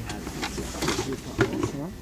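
Indistinct voices talking quietly, with a few light knocks.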